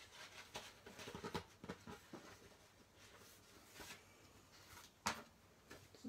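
Faint rustling and light tapping of paper and card being handled on a craft mat, with one sharper tap about five seconds in.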